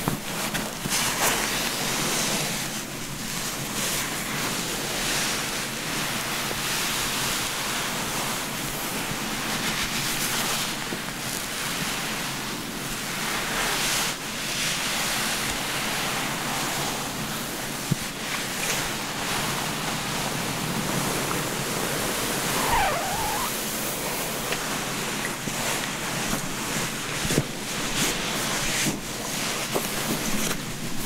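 A terry-cloth towel rubbing and squeezing wet hair close to the microphone: a soft rustling that swells and fades again and again.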